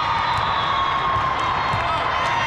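Steady crowd din in a large hall: many voices talking and cheering at once, with no single sound standing out.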